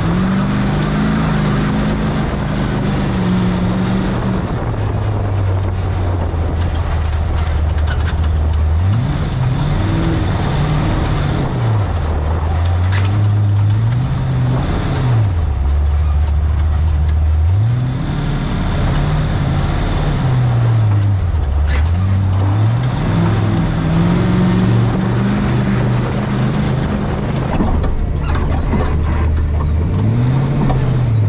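Off-road pre-runner race truck's engine revving up and falling back over and over as it is driven hard through a rocky wash, with a constant rumble of tyres and chassis over rocks and gravel.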